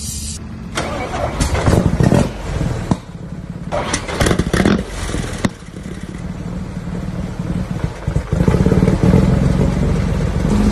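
1905 Fiat Isotta-Fraschini racing car's engine being started: it fires in loud, uneven bursts for the first few seconds, then settles into a steady run and grows louder about eight seconds in.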